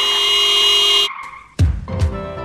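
Car tyres screeching in a hard skid, cutting off suddenly about a second in, followed near the end by a sudden loud low thump.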